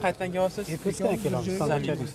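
Speech only: a man talking in conversation.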